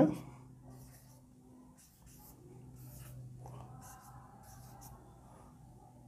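Marker pen writing numbers on a whiteboard: a faint run of short, separate strokes.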